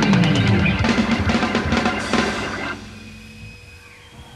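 Live rock band (drums, bass and electric guitar) playing loud with busy drum hits, then stopping dead about two-thirds of the way in, leaving only a faint held tone.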